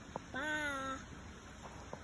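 Speech only: a single drawn-out, high-pitched call of "Bye!", with a faint click just before it.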